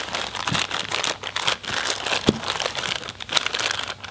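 Clear plastic bags holding AN hose fittings crinkling as they are handled and picked through, a steady crackle with a few light knocks.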